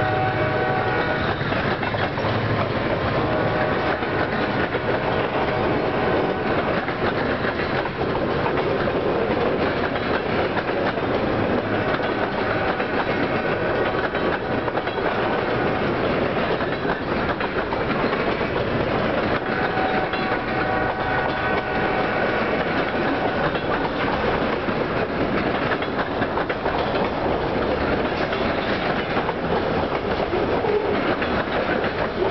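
Freight cars rolling past at close range, a steady rumble with wheels clacking over the rail joints. A held, stacked tone sounds briefly at the start and again about halfway and two-thirds of the way through.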